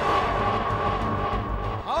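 A Suzuki hatchback's engine running steadily, with a steady high tone laid over it.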